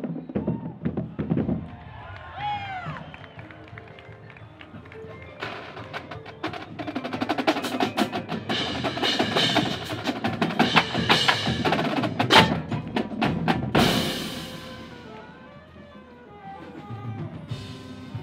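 Marching crash cymbals played along with a percussion ensemble's music: a quieter opening, then from about five seconds in a dense run of cymbal crashes and hits over drums, ending in one big crash near the end of the run that rings out and fades, followed by softer pitched mallet notes.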